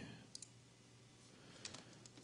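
Near silence with a few faint clicks of a computer mouse: one about a third of a second in and a pair near the end.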